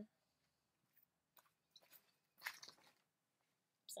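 A few short, faint rustling handling noises from craft materials being picked up, the loudest about two and a half seconds in, over near silence.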